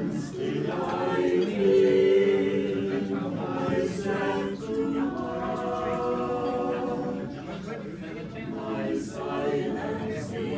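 A small choir singing a cappella, several voices holding long sustained chords, swelling loudest about two seconds in.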